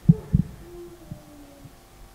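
Two dull low thumps, about a quarter second apart, followed by a faint low hum that dies away after about a second.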